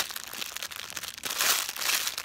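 A thin clear plastic packaging bag crinkling as hands handle it, with a louder crackle in the second half.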